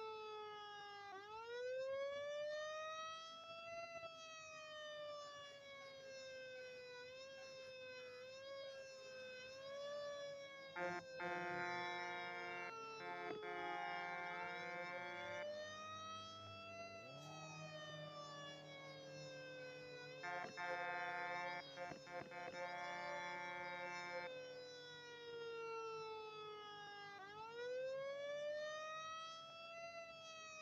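Fire truck siren wailing in long cycles, each rising quickly for a couple of seconds and then falling slowly for about ten. Two stretches of steady horn blasts sound over it, one around the middle and one about two-thirds of the way through.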